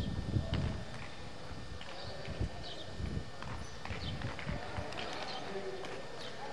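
Faint distant voices, with scattered light knocks and clicks and a low rumbling knock in the first second.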